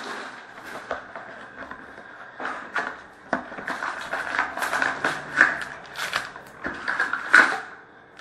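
Trading card packs and cards being handled by hand: a run of rustles, clicks and crinkles from pack wrappers and cards being pulled and sorted, getting busier from about two and a half seconds in.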